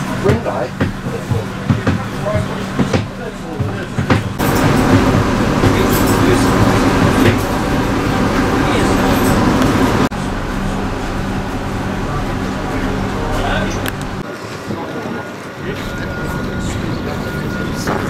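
Railcar engine running at a steady idle with a low, even hum, louder for a few seconds in the middle, under people talking nearby. The hum drops away about fourteen seconds in, and a thin steady high tone follows.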